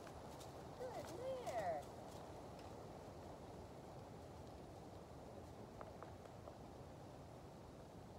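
A distant raised woman's voice calls briefly about a second in, over a quiet steady outdoor background, with a few faint hoof knocks from a horse walking away.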